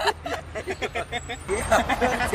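Indistinct talk from a small group of people, over a steady low rumble of street traffic.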